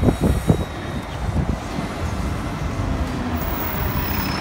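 Nova Bus LFS city bus pulling away and passing close by, its engine and road noise running steadily over street traffic, with a few knocks in the first half second.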